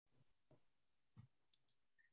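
Near silence with three short, faint clicks in the second half.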